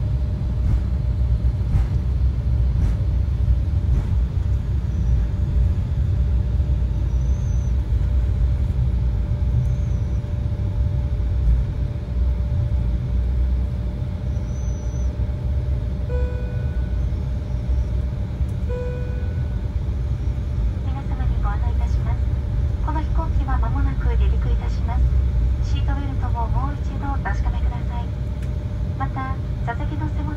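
Airliner cabin noise while taxiing: a steady low rumble of the engines with a constant hum. Two single cabin chime tones sound about halfway through, and a cabin announcement over the public-address speakers follows in the last third.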